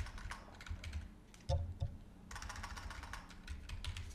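Typing on a computer keyboard: quick key clicks in two flurries, one at the start and another a little past halfway.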